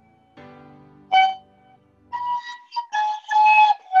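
A small wooden transverse flute (響笛, a fife) played by a beginner, heard over a video call. One short note sounds about a second in; from about halfway there is a run of short, breathy tongued notes, starting on a higher note and then moving among two lower ones.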